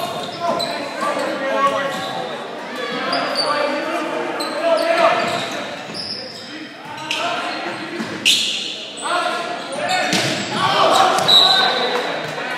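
Players and spectators calling out in an echoing gymnasium, with a few sharp hits of a volleyball, loudest about seven and eight seconds in.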